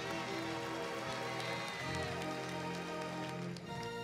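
Soft sustained chords played on an electronic keyboard, with a faint patter of scattered clapping.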